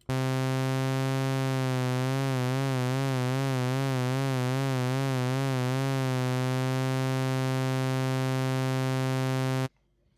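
SynthMaster One software synthesizer holding one low note. About a second and a half in, mod-wheel vibrato fades in as an even pitch wobble of a few cycles a second, then fades out by about six seconds in, leaving the plain note, which stops just before the end.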